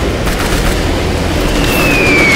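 A steady low rumble. About one and a half seconds in, the high whistle of an incoming shell starts, falling steadily in pitch.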